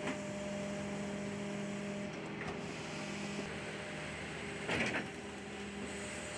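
Rear-loading garbage truck's engine and hydraulic bin lifter running with a steady hum, its pitch holding with small breaks. A short burst of clatter comes about five seconds in.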